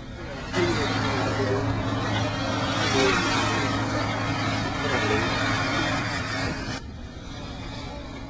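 Loud rushing noise over a steady low motor hum, from firefighting equipment working on an LNG pit fire: a large fan-type high-expansion foam generator and a hose line. It starts abruptly about half a second in and cuts off just before the seventh second.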